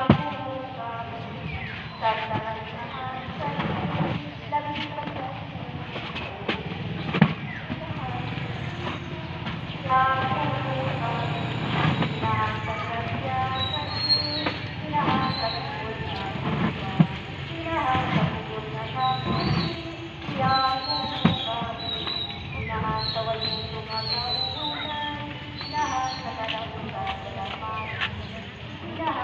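People talking, with sharp clicks and knocks now and then, and short high chirps in the second half.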